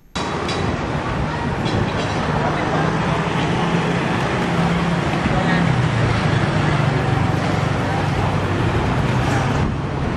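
Busy street ambience: steady traffic noise with a low engine hum and background voices.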